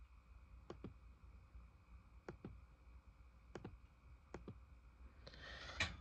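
Faint clicks in four quick pairs, spaced about a second or more apart: a laptop being clicked to page through an on-screen book.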